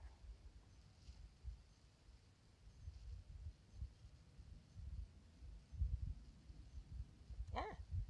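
Wind buffeting the microphone in low, uneven rumbles, and near the end a short rising meow from a cat.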